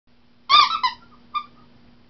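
Rubber squeaky dog toy squeezed and released, giving a quick pair of high squeaks about half a second in and a shorter single squeak a moment later.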